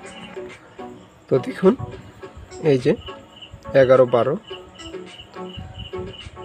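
A steady, high-pitched chirping pulses evenly in the background. A person's voice rises and falls in three short stretches, about a second and a half, three seconds and four seconds in; these are the loudest sounds.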